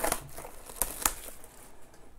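Crinkling and rustling of trading-card hobby box packaging being handled, with a few sharp clicks of cardboard, the loudest about a second in.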